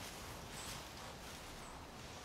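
Quiet outdoor ambience: a faint, steady hiss with two brief, faint high-pitched chirps.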